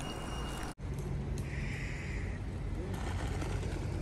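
City street traffic noise: a steady hum of vehicles with a low engine drone. The sound drops out briefly about a second in.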